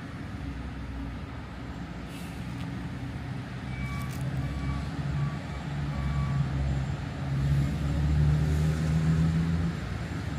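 A large motor vehicle's engine running nearby, a low hum that grows louder over the second half. A few short, faint, high beeps sound around the middle.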